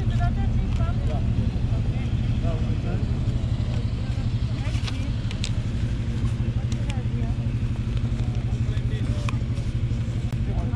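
A steady low engine hum runs under faint background chatter of people talking. A few light clicks and rustles come from paper record sleeves being flipped through by hand.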